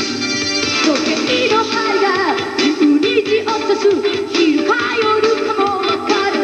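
Rock band playing live, with keyboards and electric guitar, and a lead line bending up and down in pitch over the top.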